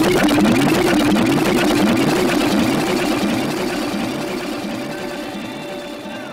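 A jungle/drum-and-bass DJ mix playing a short repeating figure of rising pitch sweeps, about three a second, that fades out steadily as the track winds down.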